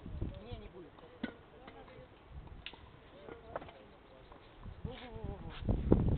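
Faint distant voices of people talking, with low rumbles near the start and a louder one just before the end.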